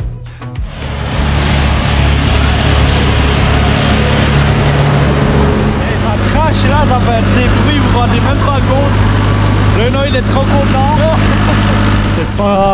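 Valtra tractor engine running steadily while mowing with a front-mounted mower, its low drone shifting pitch about halfway through. A man's voice and laughter come in over it in the second half.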